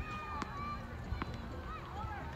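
Tennis ball bounced twice on a hard court by the server before a serve: two short sharp bounces, about half a second and a little over a second in.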